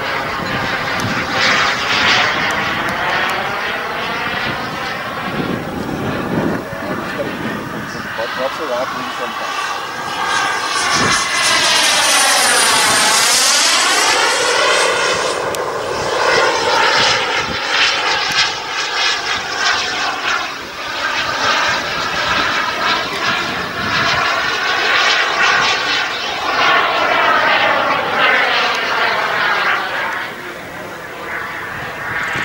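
Kingtech K140 model turbine of an F1 Fortune RC jet running as the jet flies around overhead. Its sound swells and fades with each pass, with a sweeping whoosh as the jet goes by, loudest about halfway through.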